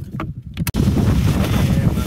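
Wind buffeting the microphone: a loud, uneven low rumble, broken by a brief drop and a click less than a second in.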